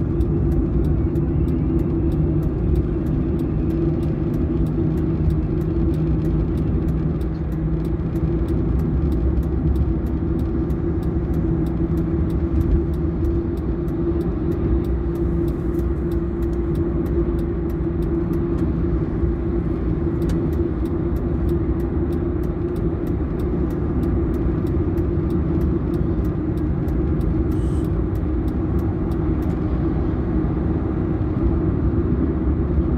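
Car driving at motorway speed, heard from inside the cabin: a steady low drone of tyre and engine noise.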